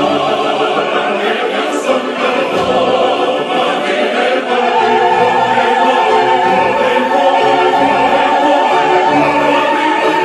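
Opera singing with orchestra: several voices singing together over the orchestra, with a high note held steady from about halfway on.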